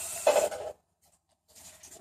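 A person sipping beer from a can: a slurping hiss and a swallow that stop suddenly within the first second, then faint small sounds near the end.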